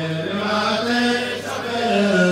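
Chanting of an Arabic devotional song in praise of the Prophet Muhammad, with long held notes that step up and down in pitch.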